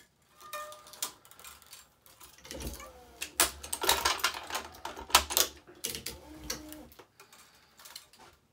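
Polyester racquet string being pulled through the frame with clicks and rubbing squeaks. From about two and a half seconds in, an electronic stringing machine's tensioner runs with a steady low hum for about four and a half seconds, pulling a main string to tension.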